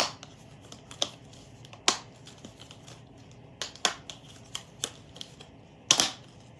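Green collapsible plastic crate being forced to fold, its hinged side walls giving a series of sharp, irregular plastic clicks and snaps.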